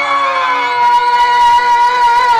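A man's voice holding one long, high sung note of a Telugu stage-drama verse, easing down slightly at first, then steady, with a slight waver past the middle.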